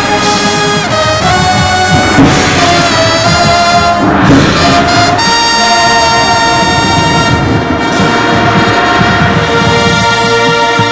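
Marching band brass and saxophones playing loudly: a moving melody for about the first five seconds, then one long held chord.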